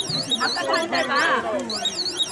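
A high-pitched electronic warbling tone that sweeps down and up several times a second, over crowd voices.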